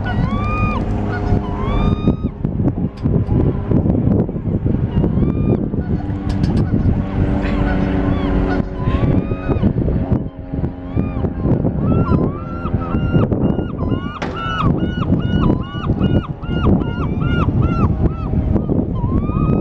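Gulls calling: a few hooked, yelping calls about a second apart near the start, then a long, rapid run of repeated calls, about two or three a second, through much of the second half. A steady low rumble lies underneath.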